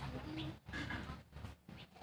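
A dove cooing, a few short low notes, with soft scrapes of a metal spoon digging soil in a tin can.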